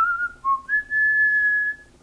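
A man whistling a few idle notes: a short run of notes, a brief lower dip about half a second in, then one long high note held for about a second.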